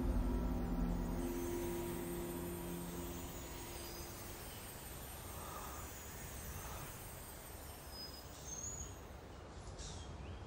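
Drama soundtrack's held low notes fading out over the first few seconds, leaving faint steady background hiss with a few brief high chirps.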